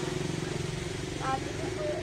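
An engine idling close by: a steady low pulsing drone.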